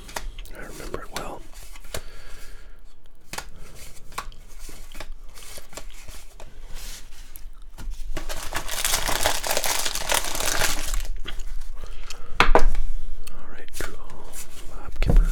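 Plastic wrapper of a 1989 Donruss rack pack being crinkled and torn open, a loud crackling stretch of about three seconds in the middle. Before it come soft flicks and taps of cardboard cards being handled, and near the end there is a single sharp tap.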